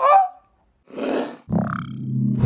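A woman's short vocal exclamation with a sliding pitch, then a brief hiss about a second in. About a second and a half in, the outro music starts with a low steady hum.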